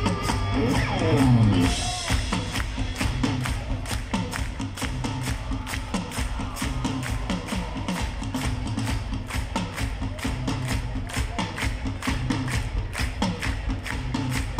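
Live rock band playing, with a short sung line at the start, then a steady beat as the crowd claps along in time, about three claps a second.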